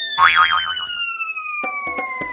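Cartoon sound effects for a fall: a long whistle tone sliding steadily down in pitch, with a wobbling boing about a quarter second in. A few short knocks come near the end as the character lands on the floor.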